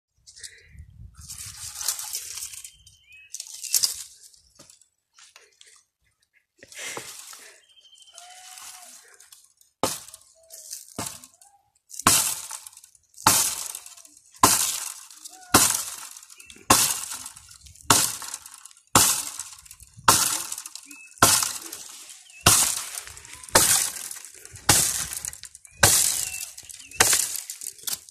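A long-handled digging tool's metal head chopping into a tree root in the ground: a few irregular knocks in the first half, then steady hard strikes about once a second over the second half.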